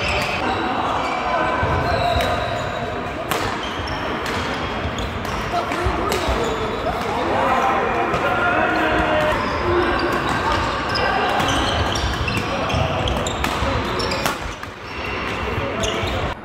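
Badminton doubles play: sharp, irregular hits of rackets on a shuttlecock and players' footfalls on a wooden court, over the steady chatter of many players in a large sports hall.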